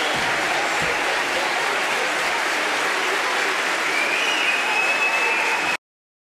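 Audience applauding steadily, with a high held note rising out of it about four seconds in. The sound cuts off abruptly just before the end.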